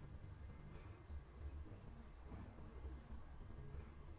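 Near silence: quiet room tone with a faint low hum.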